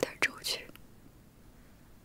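The end of a woman's short spoken line in Mandarin during the first moments, then quiet room tone.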